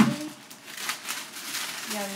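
Tissue paper rustling and crinkling as it is folded back and lifted out of a box, in a few short crinkly rustles, after a sharp sudden sound at the very start.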